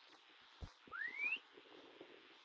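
A single short whistle rising steadily in pitch about a second in, just after a soft footfall thump on a dirt path.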